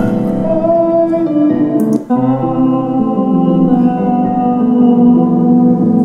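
Improvised demo recording of piano and singing played back from a computer: slow held notes and chords. About two seconds in it breaks off briefly and resumes on new held notes.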